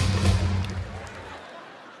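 Audience applause over a sustained low closing chord of live music, both fading away by about a second and a half in.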